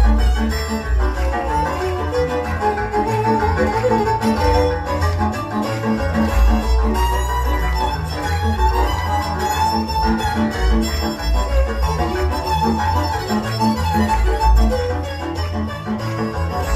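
Hungarian folk dance music played by a string band: a fiddle melody over bowed bass and rhythmic chording, with a steady beat.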